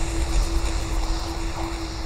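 Dark ambient fantasy background music: a low rumbling drone with a single held, gently pulsing tone over it and an airy hiss, growing a little quieter towards the end.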